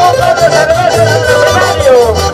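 Live band music played loud over a sound system: a high, wavering melody line that slides downward near the end, over a pulsing bass beat.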